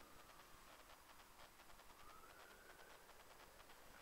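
Faint, distant jet aircraft noise: a thin engine whine that slides down in pitch early on and rises again about two seconds in, over a low hiss.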